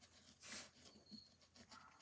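Near silence: room tone, with faint handling noise about half a second in as fingers work a screw on a phonograph motor's cast housing.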